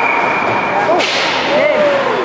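A steady, high-pitched whistle tone held for about a second, typical of an ice hockey referee's whistle. It cuts off at a sharp crack with a hissing tail, over the voices of spectators.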